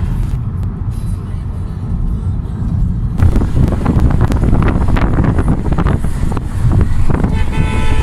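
Road and engine noise inside an Opel car's cabin while driving, becoming rougher and more uneven about three seconds in, with a short steady toot near the end.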